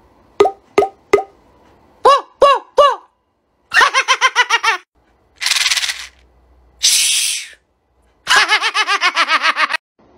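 Several bursts of a man laughing in rapid ha-ha pulses, the last lasting about a second and a half. Between them come a few clicks, three short squeaky rising-and-falling tones, and two brief hissing bursts.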